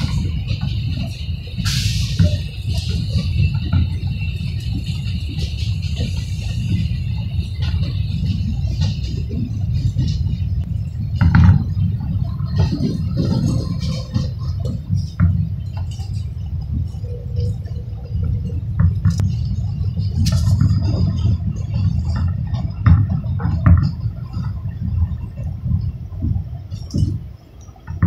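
Subway train running on an elevated line, heard from inside the car: a steady low rumble of wheels on rail with scattered clicks and rattles. A high whine sits over the first few seconds while another train passes alongside, and the sound drops near the end as the train slows into a station.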